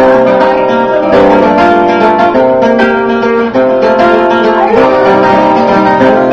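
Two acoustic guitars, an archtop with f-holes and a flat-top, played together: picked and strummed notes and chords ringing steadily.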